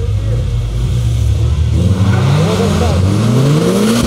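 Race car engine held at steady revs at the start line, then rising steadily in pitch from about halfway through as the car accelerates away on the ice.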